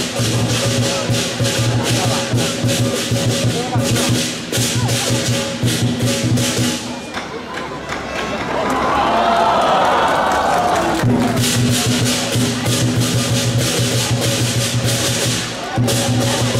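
Lion dance percussion: a large drum beaten in a fast, driving rhythm with clashing cymbals. About seven seconds in, the drumming stops for around four seconds and a loud swell of crowd cheering fills the gap, then the drum and cymbals start again.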